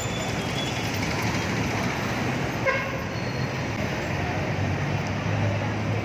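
City street traffic: a steady wash of vehicle noise, with a low engine hum that grows stronger near the end and a brief tone about halfway through.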